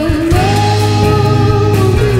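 A woman's singing voice holds one long note that slides up at its start, over a full band accompaniment with a steady low bass.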